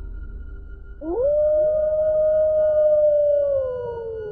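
A single long wolf howl, as a horror sound effect: it rises sharply about a second in, holds a steady pitch, then slides slowly down near the end, over a low ambient music drone.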